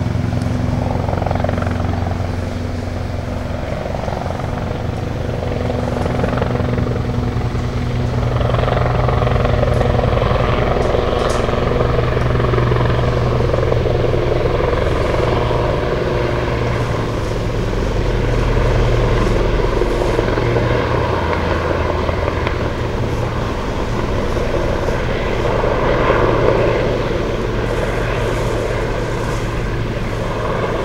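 Steady low mechanical drone made of several held low hum tones, swelling and easing slowly over the half minute.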